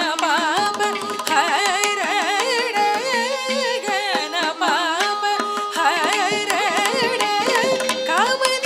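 Female Carnatic vocalist singing with heavily ornamented, oscillating notes (gamakas) over a steady tanpura drone. Mridangam strokes accompany her throughout.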